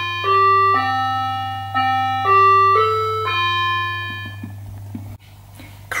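Electronic doorbell chime playing a short melody of about seven notes; the last note rings out and fades. It signals the delivery driver at the door.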